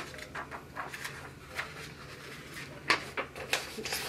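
Small objects being handled: a scattered string of light clicks, knocks and rustles, the sharpest about three seconds in, over a faint low steady hum.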